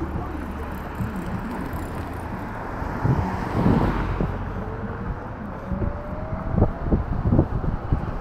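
Wind and road noise of a moving e-scooter ride in city traffic, with a low hum in the first half and a whine that rises in pitch over the second half. A few sharp knocks come in the second half, the scooter jolting over bumps in the pavement.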